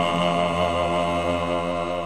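Final held chord of a rock-opera song: voices and instruments sustain one chord steadily while it slowly fades.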